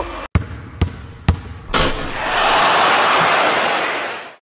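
A basketball bouncing three times, about half a second apart, on a hard floor, followed by a swelling rush of noise that holds loud to the end.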